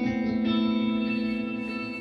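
SG-style solid-body electric guitar played through an amplifier: a chord is struck near the start and left to ring, fading slowly.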